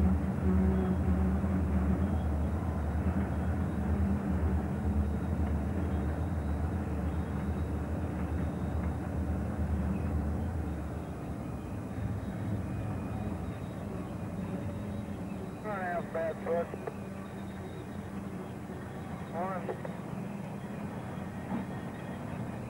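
CP Rail diesel-electric locomotives passing under power, their engines droning for about the first ten seconds and then fading. After that comes the steady rumble of freight cars rolling by.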